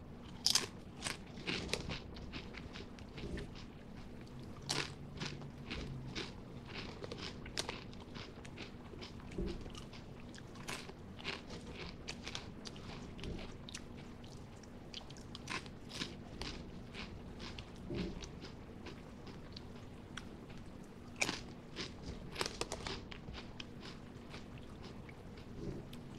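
A person biting and chewing crunchy wavy potato chips close to a microphone: irregular bursts of crisp crunching in clusters, with short pauses between mouthfuls. A faint steady hum runs underneath.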